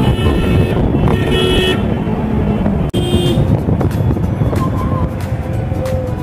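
City road traffic at night: a steady rumble of engines, with vehicle horns tooting several times over it, in short blasts near the start, around a second and a half in, and about three seconds in.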